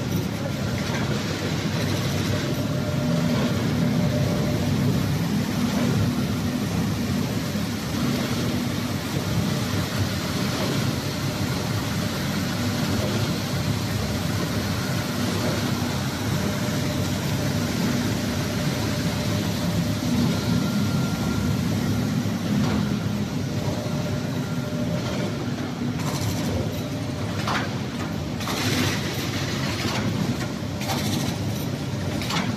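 Large automatic folder-gluer and stitcher machine for corrugated cardboard boxes running, a continuous mechanical din with a constant low hum.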